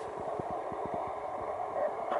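Steady background noise with light, irregular low knocks from a handheld camera being moved around.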